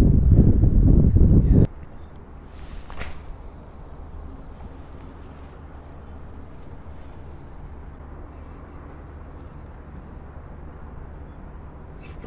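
Strong wind buffeting the microphone as a loud low rumble, which cuts off suddenly about a second and a half in. After that, a faint, steady outdoor background with a low hum.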